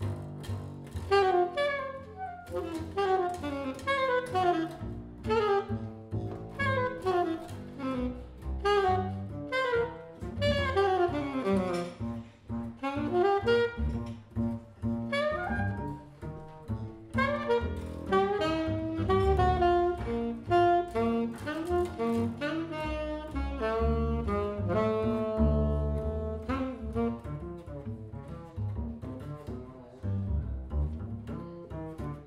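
Jazz saxophone playing a quick run of notes over an acoustic double bass plucked in a steady walking line, the saxophone holding some longer notes past the middle. The saxophone stops near the end, leaving the bass playing alone.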